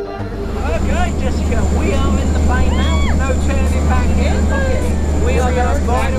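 Propeller plane's engine running with a steady low drone heard from inside the cabin, with people's voices chattering and calling out over it.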